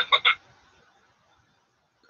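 A man's voice trailing off in a couple of short throaty vocal sounds in the first moment, then near silence: room tone.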